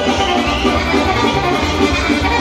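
Romanian wedding band music for a hora-style circle dance: a violin carries the tune over a steady bass beat.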